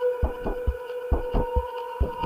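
Electronic IDM music: deep kick-drum hits, often in pairs, over a steady held synth tone.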